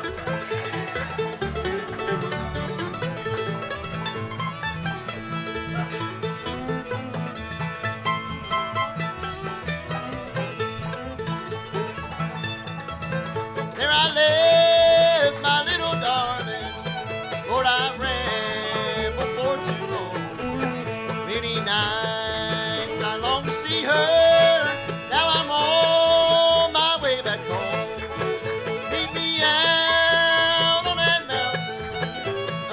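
Live bluegrass band of banjo, fiddle, mandolin, acoustic guitar and upright bass playing an instrumental break; about 14 seconds in, a man's lead vocal comes in over the band and the music gets louder.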